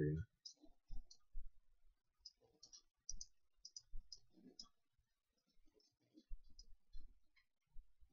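Computer mouse clicks, short and irregular, often two or three in quick succession, as edges and faces are picked in 3D modelling software.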